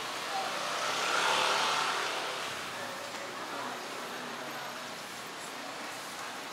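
A motor vehicle passes close by on the street, its noise swelling to a peak about a second in and fading away over the next couple of seconds, leaving steady traffic hum.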